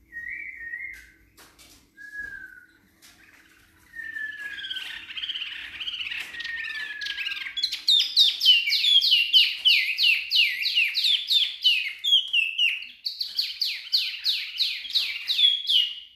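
Wambi mini songbird singing: a few short separate whistles, then a long falling note, then from about halfway a fast run of repeated down-slurred chirps, several a second, broken by a short pause near the end before it starts again.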